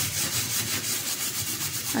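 A metal scouring pad scrubbing a stainless steel gas-stove burner pan in quick, even back-and-forth strokes, scraping at soapy, burnt-on grease.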